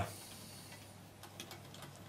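A few faint, light clicks of a screwdriver undoing a small screw on the cassette deck's plastic head cover.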